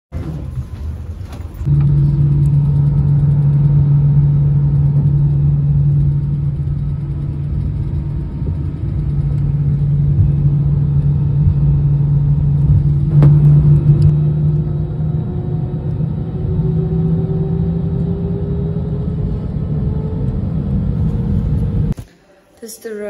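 Jet airliner heard from inside the cabin on the runway: a loud, steady low rumble, with a whine that climbs slowly in pitch through the second half as the plane accelerates.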